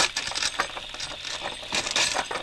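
Radio-drama sound effect of a door's locks and bolts being undone: a quick, irregular run of metallic clicks and rattles, over a steady hiss of rain.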